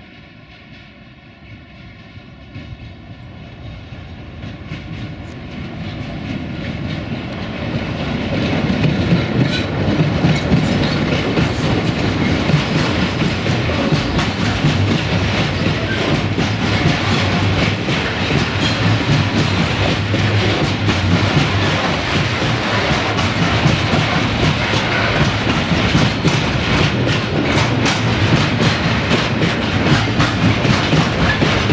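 A 060-DA (LDE2100) Sulzer diesel-electric locomotive hauling a loaded freight train of grain hopper wagons, growing steadily louder over the first eight seconds as it approaches. The wagons then roll past close by, with a dense run of wheel clicks over the rail joints.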